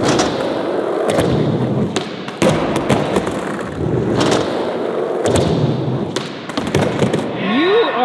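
Skateboard wheels rolling over a hard skatepark floor, broken by a series of sharp thuds and clacks from the board hitting the ground, the last few as it rolls away riderless.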